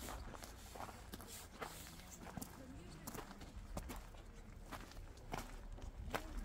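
Footsteps on a loose gravel path, a step roughly every two-thirds of a second, with faint voices in the background.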